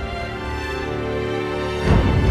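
Dramatic background score of sustained held tones, ending in a sudden loud hit at the very end.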